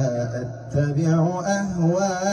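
A man reciting the Qur'an in a melodic, drawn-out tajwid chant, in the reading of Hamzah via Khalaf, through a microphone. His voice holds long wavering notes, with a short break for breath about two-thirds of a second in.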